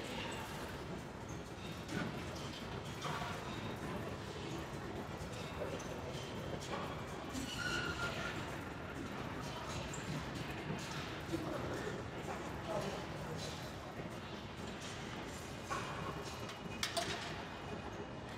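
Busy gym room sound: indistinct background voices with scattered clanks and knocks of weights and machines.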